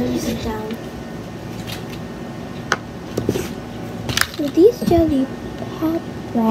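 A girl's voice making a few short vocal sounds without clear words, near the start and again about four seconds in, with a few sharp clicks from objects being handled in between.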